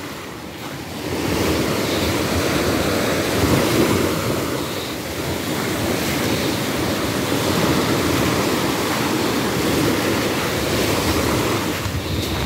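Small waves breaking and washing up a sandy beach, a steady surf wash that swells about a second in, with wind buffeting the microphone.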